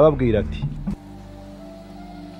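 A voice speaking, cut off about a second in, followed by quiet background music of steady, held tones.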